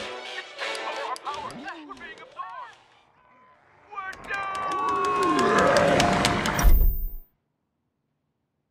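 Television superhero-cartoon soundtrack with music, effects and voices. It grows louder as the TV volume is turned up, then cuts off abruptly about seven seconds in, as if the set were switched off.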